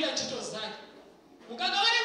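A woman singing, with a held note fading away, a short pause, and the singing starting again about one and a half seconds in.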